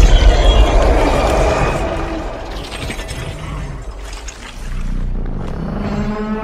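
Film sound effects: a loud, dense rush of noise over a deep rumble that eases off after the first couple of seconds, then a low sustained tone that comes in near the end.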